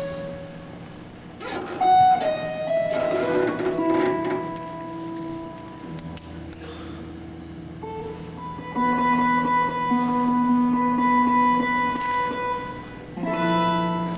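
A 21-string harp guitar played solo, plucked notes left to ring over a steady low bass note. There is a sharp, loud pluck about two seconds in, and a new, fuller phrase starts shortly before the end.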